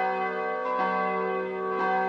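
Church bells ringing: several steady tones overlap and hang on.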